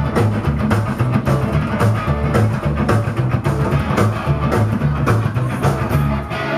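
Rock band playing live, an instrumental passage with guitars, bass and a drum kit keeping a steady beat, recorded from the audience.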